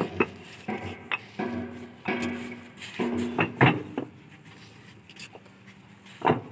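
Fly ash bricks knocking against each other as they are handled and stacked for loading onto a truck: a string of sharp, hard clacks, loudest about three and a half seconds in. In the first half a low, held pitched tone sounds three times between the knocks, and the last two seconds are quieter.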